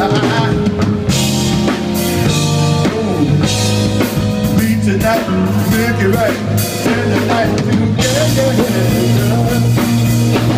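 Live funk band playing an instrumental passage: electric bass, drum kit and electric guitar, with a wavering, bending lead line over the bass groove.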